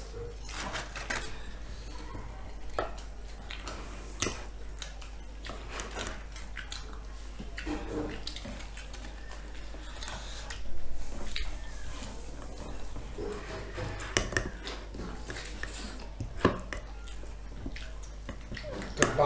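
Scattered light clinks and taps of a spoon against serving bowls and plates during a meal.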